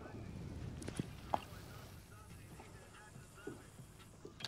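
Quiet open-water ambience on a small boat: a faint low rumble of wind and water, with two short sharp clicks about a second in, right after a cast.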